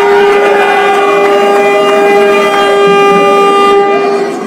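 A horn sounding one long, steady, loud note, with a few fainter steady tones alongside it.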